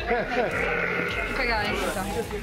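People talking, with a high, quavering voice-like sound lasting about a second near the middle.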